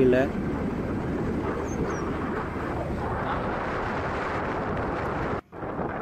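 Steady rushing wind and road noise from a moving vehicle on a hill road. It cuts out suddenly for a moment near the end.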